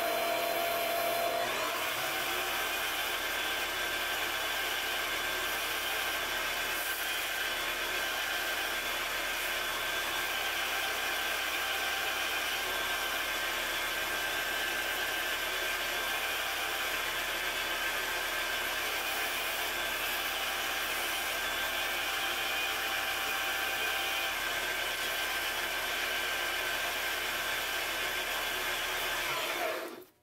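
Grizzly mini lathe running steadily, with a steady motor whine, while abrasive paper is held against a spinning brass ring, adding a continuous sanding hiss. The sound cuts off suddenly near the end.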